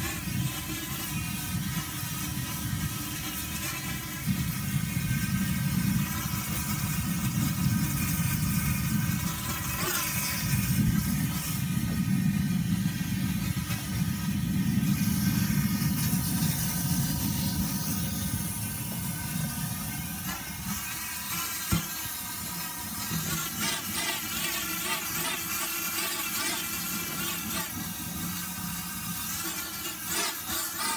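Gas burner running steadily under a tenor steelpan bowl, burning (tempering) the hammered playing surface before pre-tuning: a steady rumble, louder through the middle and easing off after about 20 seconds, with a single sharp click a little after that.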